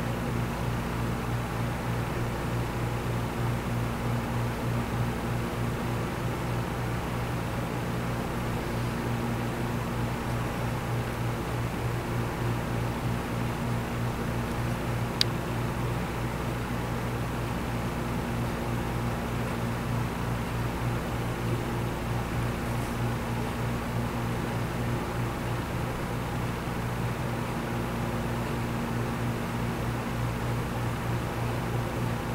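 Steady low hum over a soft hiss, the background noise of a fan or air conditioning, with a single sharp click about halfway through.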